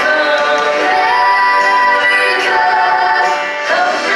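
Live stage music: several singers, women and men, holding long notes together over a banjo-led country band accompaniment.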